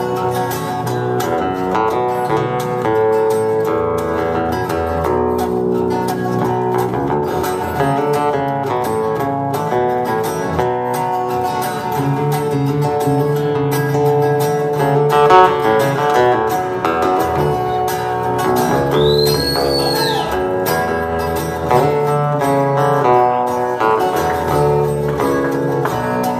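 Instrumental break of a live folk song played on two guitars: an acoustic guitar and an electric guitar.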